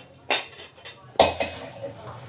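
Large aluminium pot lid clanking against metal cookware: two sharp knocks about a second apart, the second louder with a brief ringing.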